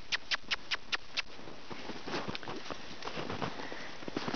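Snow crunching and squeaking underfoot in a quick, even rhythm of about five crisp steps a second, fading into softer, scattered crunching after about a second.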